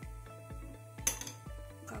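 Background music with a steady beat; about a second in, a single sharp clink of a spoon against a glass mixing bowl while cocoa powder is spooned in.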